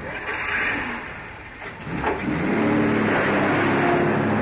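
Car engine on an old film soundtrack, running with a rough noisy rumble, then revving up about two seconds in and holding a steady higher pitch as the car drives off.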